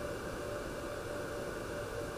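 Steady background hiss with a faint, even hum and no distinct events: room tone on the recording.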